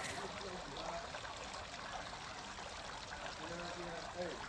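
Faint, steady sound of running water, played back as a recording to help the listeners urinate. Faint voices murmur underneath.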